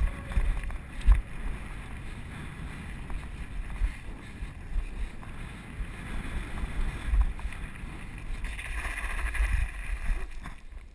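Mountain bike rolling down a rough gravel dirt track, heard through a GoPro Hero 2's camera microphone: a steady rumble of tyres on stones and wind on the microphone, with low thumps from bumps, the loudest about a second in. Near the end a brighter gravel hiss rises for a second or so.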